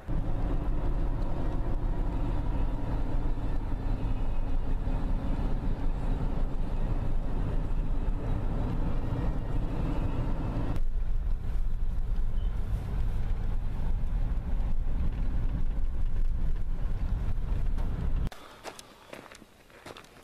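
Jeep Wrangler Unlimited driving on a paved road, heard from inside the cab: a loud, steady rumble of engine and tyres. It cuts off sharply near the end, giving way to faint footsteps on a woodland trail.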